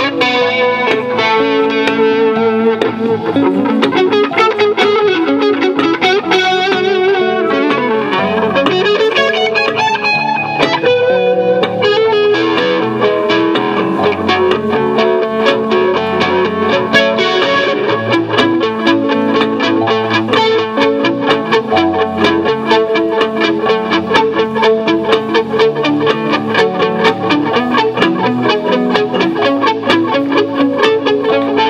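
Electric guitar and bass playing together, the lead line coloured by effects and some distortion. From about halfway through, the notes come in fast, even runs.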